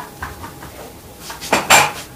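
Felt whiteboard eraser rubbing across a whiteboard to wipe off a written character: a few light knocks, then one short, loud scrub about a second and a half in.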